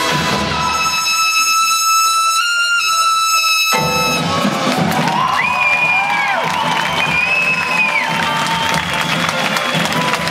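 Two trumpets hold a high sustained note together, lifting slightly just before it cuts off sharply about four seconds in. Crowd cheering and applause follow, with shrill whistles that rise, hold and fall.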